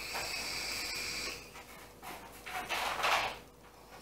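A steady high whine for about a second and a half, then a person breathing out a long puff of vape vapor.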